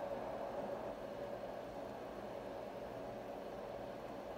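Steady low background hiss with no distinct events.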